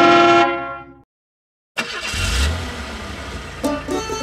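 A held, horn-like note ends the song and fades out within the first second, followed by a moment of silence. Then a short rushing sound with a low rumble plays, and plucked banjo-style music starts near the end.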